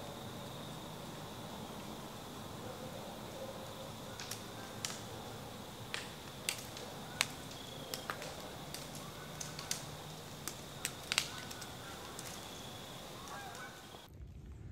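Quiet woodland ambience: a faint steady high tone, with scattered sharp ticks and snaps starting about four seconds in.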